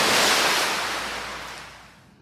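A rushing, surf-like water sound effect for the sea splitting open: loud at first and fading away over about two seconds.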